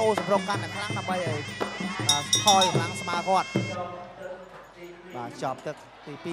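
A broadcast commentator's voice over traditional Kun Khmer ring music, with a reedy wind instrument holding steady notes. The voice stops a little before four seconds in and everything drops quieter.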